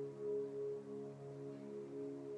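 Ambient meditation music: a sustained drone of several steady low tones held together, gently swelling and fading, in the manner of singing bowls.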